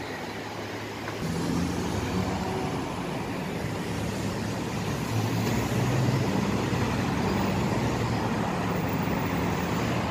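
Road traffic: cars and SUVs driving past close by on a multi-lane city road, a steady mix of engine hum and tyre noise that grows louder about a second in.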